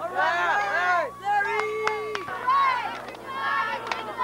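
Several high-pitched voices calling and shouting over one another, indistinct, with one long drawn-out call about halfway through.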